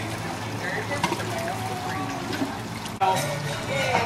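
Water trickling off the wet end of a pool slide into the swimming pool, under faint voices. About three seconds in the sound jumps abruptly to nearer voices and chatter.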